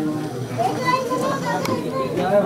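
A crowd of people talking at once, many voices overlapping in a general chatter.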